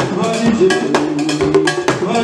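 Vodou dance music: a cowbell-like metal bell struck in quick, repeated strokes over percussion, with pitched tones wavering underneath.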